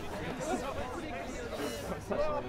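Background voices: people chatting at a distance, quieter than close-up talk, with no other distinct sound.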